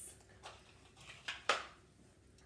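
Handling noise from small objects being moved and set down: a few soft clicks and taps, the loudest about one and a half seconds in.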